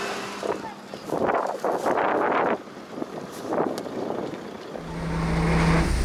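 Indistinct voices and irregular noise, then about five seconds in a motorboat's engine comes in as a low steady rumble with a constant hum.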